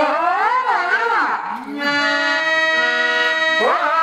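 A harmonium holds steady notes while a singer's voice glides up and down over it for about the first second and a half. The harmonium then sustains its chord alone, and the voice comes back in near the end.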